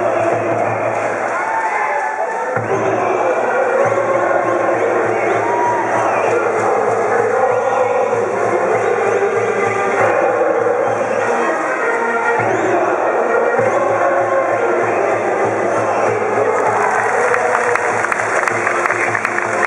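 School brass band playing a baseball cheering song, with the student cheering section shouting and chanting along.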